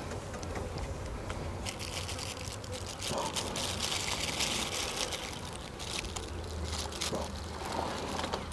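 Soft handling noises: a plastic bag rustling and crinkling with small ticks as hands press pieces of orange into raw seasoned pigeons, over a steady low outdoor background rumble.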